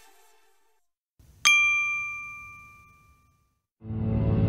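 A single bright, bell-like ding about one and a half seconds in, ringing out with a few clear tones that die away over about two seconds. The previous track's tail fades out before it, and new music starts near the end.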